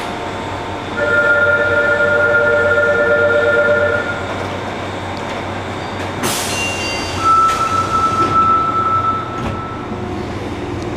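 Subway train stopped at a station with its doors closing: a steady two-pitched electronic signal tone for about three seconds, then a sharp hiss of air about six seconds in as the doors start to move, followed by a single steady high tone for about two seconds while they shut.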